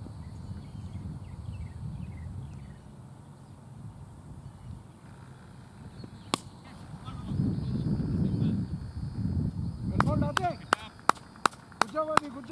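A low rumble of wind and far-off voices on an open field. About six seconds in comes a single sharp crack of a cricket bat striking the ball. From about ten seconds there is a run of quick, even hand claps, about three a second, with a shout among them.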